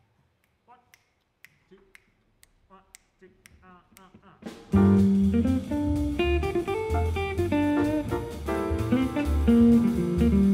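Jazz quartet of piano, electric guitar, upright bass and drums coming in together about halfway through, after a few seconds of faint clicks and soft scattered notes, then playing on at full level.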